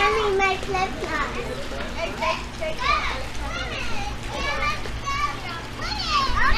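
Several young children's voices chattering and calling out over one another while playing, with a steady low hum underneath.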